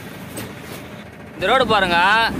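A singing voice from a song pauses for about a second and a half, leaving only faint hiss, then comes back in with a long, wavering, sliding note.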